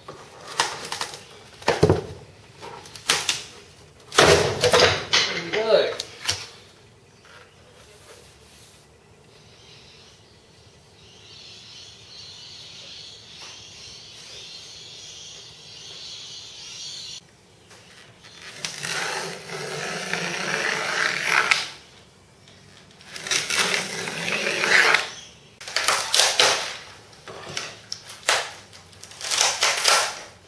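Workshop handling noises as a cured, hollow-moulded composite RC wing is worked free of its mould: knocks, clatters and scraping bursts, with a steady hiss lasting several seconds in the middle.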